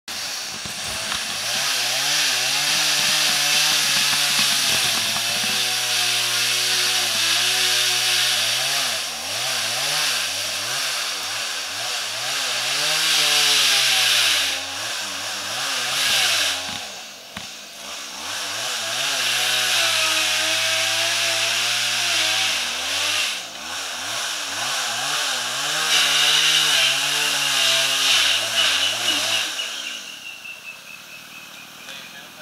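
Chainsaw running hard as it cuts into a bamboo culm, its engine pitch rising and sagging again and again under load. About halfway through it briefly drops off before revving up again.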